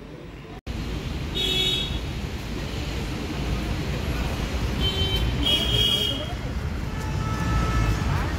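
Street traffic outdoors: a steady low rumble of passing vehicles with short horn toots, one about a second and a half in and a couple more around five to six seconds in. A brief dropout about half a second in marks a cut from a quieter indoor sound.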